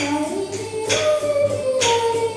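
A girl singing a slow melody in long held notes, accompanied by an acoustic guitar whose chords are struck about once a second.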